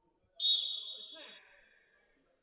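A referee's whistle blown once, about a second long, its pitch sliding down as the blast fades; it calls the teams back from the break before the third period.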